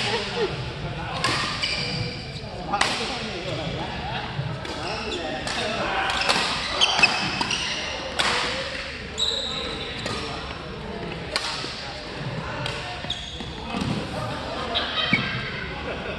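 Badminton rackets striking a shuttlecock in a doubles rally: a dozen or so sharp hits at irregular intervals, echoing in a large gym, with short squeaks of court shoes on the floor.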